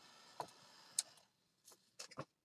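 Near quiet, with two faint short clicks about half a second apart from hands handling lace and paper on a craft table.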